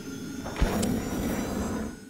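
Electronic logo sting: sustained synth tones with a deep hit about half a second in, fading out at the end.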